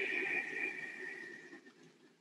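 A long, slow breath out, a soft steady hiss that fades away over about two seconds.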